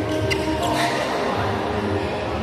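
Badminton rally: a couple of sharp racket strikes on the shuttlecock and shoe sounds on the wooden court in the first second, over steady music.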